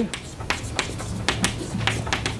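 Chalk on a blackboard: short sharp taps and strokes, a handful in two seconds, over a low steady hum.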